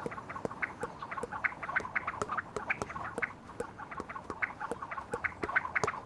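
Ducks quacking in a rapid, irregular run of short calls, several a second.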